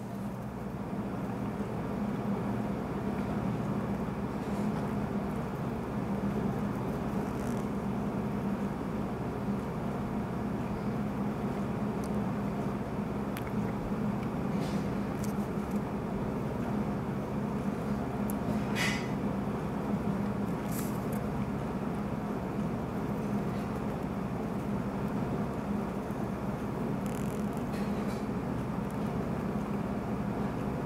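Room air conditioner running for heat, a steady noisy hum that grows louder over the first second or two and then holds. A few faint ticks sound over it.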